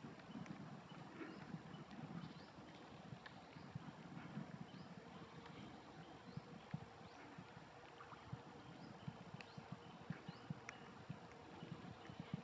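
Faint outdoor ambience: a low rumble with scattered soft clicks and knocks, and faint short high chirps every second or so.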